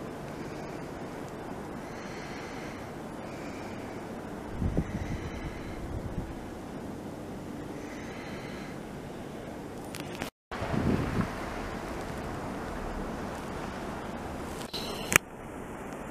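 Vintage EMD diesel locomotive idling at a distance, a steady low rumble under wind noise on the microphone, with a few louder gusts.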